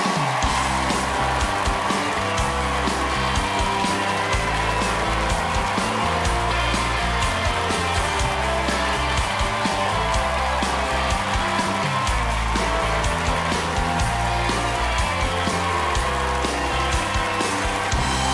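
Live house band playing upbeat walk-on music: a stepping bass line under a steady drum beat.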